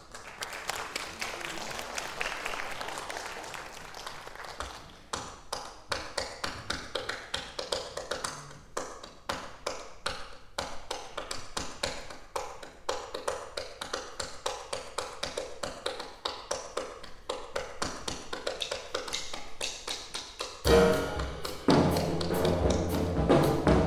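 Solo 'beat clap': a performer clapping cupped hands close to a microphone in a quick, syncopated swing rhythm, with claps of differing tone. Near the end the band's pitched instruments come in louder under the clapping.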